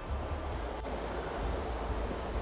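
Wind rumbling on the microphone over the steady rush of a large waterfall swollen with snowmelt.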